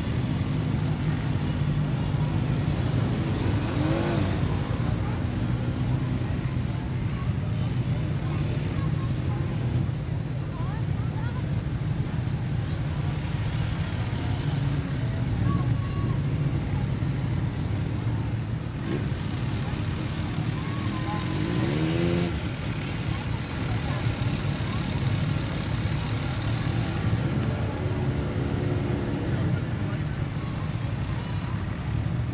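A slow procession of motorcycles and cars passing close by, their engines running in a continuous drone. Engines rev up with a rising pitch about four seconds in and again a little past the twenty-second mark.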